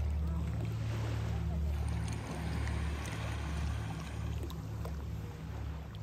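A steady low rumble with an even hiss over it.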